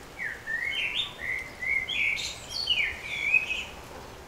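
A songbird singing a run of short, sliding, whistled chirps that lasts about three and a half seconds.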